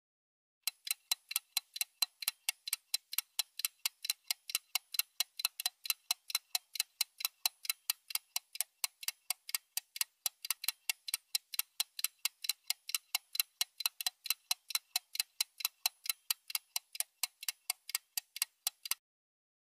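Clock-ticking sound effect for an on-screen countdown timer: quick, even ticks, about four or five a second, starting about a second in.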